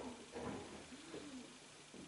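A pigeon cooing faintly, a low rising-and-falling coo repeating about once a second, with a short scratch of a marker writing on a whiteboard about half a second in.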